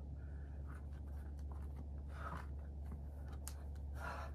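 Faint scuffs and scrapes of a climber's shoes and hands on rock while he mantles over the top of a boulder, with a hard breath about two seconds in, over a steady low hum.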